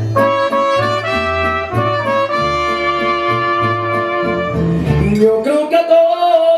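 Mariachi band playing an instrumental introduction: trumpets hold long notes over a bass line that changes pitch about every half second.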